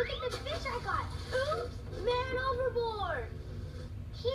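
High-pitched children's voices talking and calling out, with rising and falling pitch; the words are not clear.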